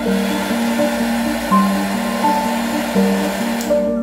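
Electric heat gun blowing a steady rush of air, cutting off near the end, with soft piano music underneath.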